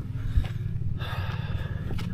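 A man breathing hard and panting, out of breath after climbing a steep hillside path.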